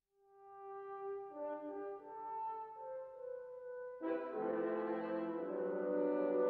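Film-studio logo fanfare played by brass. It opens with a single held horn note, and other notes join in slow harmony. About two-thirds of the way through, fuller brass chords come in and it grows louder.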